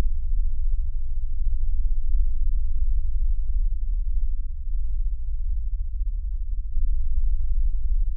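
A loud, steady low drone, with a few faint ticks above it.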